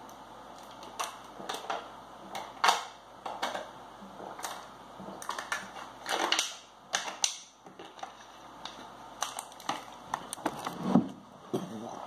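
A person drinking in gulps from a plastic sports-drink bottle: irregular short clicks and crinkles of the plastic with swallows, and a louder burst of breath or bottle noise about six seconds in.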